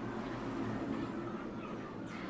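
Quiet, steady low hum of background room noise, with faint handling of loose electrical wires.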